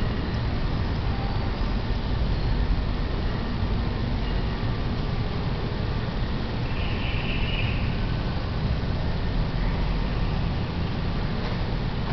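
Steady low rumble of background noise, with a brief higher-pitched sound a little past the middle.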